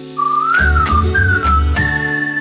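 A short whistled tune over cartoon music with a low bass: a few gliding phrases that end on a held higher note near the end.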